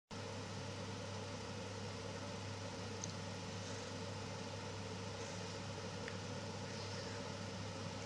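A steady low mechanical hum with an even hiss over it, unchanging throughout, with a couple of faint small ticks.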